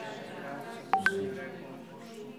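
Two sharp clicks about a fifth of a second apart, about a second in, each with a brief electronic-sounding blip, over a faint praying voice.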